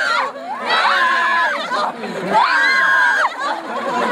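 A group of people cheering together in long, high shouts, three of them, each held for about a second with short gaps between.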